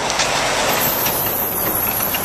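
Steady road traffic noise from vehicles passing close by on a busy road, a lorry among them.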